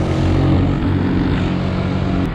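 ATV (quad) engine running under way, heard from the rider's seat as a steady engine drone whose pitch shifts slightly with the throttle.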